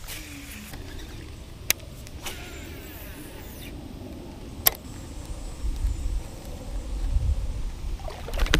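Low rumble of wind buffeting the microphone, swelling in the second half, with two sharp clicks about one and a half and four and a half seconds in from handling of a baitcasting reel while casting and retrieving a lure.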